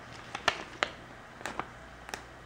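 Metallic iron-on vinyl being peeled away from its clear plastic carrier sheet while weeding, giving a few small crackling ticks.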